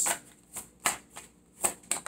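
Tarot cards being shuffled by hand, with about five separate sharp snaps of the cards.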